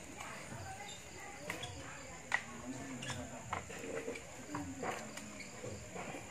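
Low, indistinct background chatter of people talking, with a handful of scattered sharp clicks and pops, the loudest a little past two seconds in.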